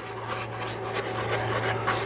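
Light rubbing and scraping as a glue bottle's nozzle is drawn across masking tape, laying down squiggles of glue, over a steady low hum.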